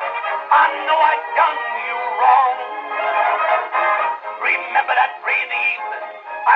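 Shellac 78 rpm record played on a hand-cranked acoustic cabinet phonograph: a male voice singing with a dance orchestra. The sound is thin, with no deep bass and no high treble.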